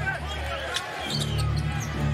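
Basketball being dribbled on a hardwood court, with arena music playing underneath; the music's steady bass swells about a second in.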